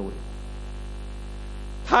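Steady low electrical mains hum from the sound system, running unchanged through a pause in speech.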